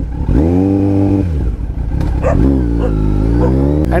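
A motorcycle engine pulling away. Its pitch rises, then holds for about a second. A couple of seconds later it runs again, dipping and rising in pitch.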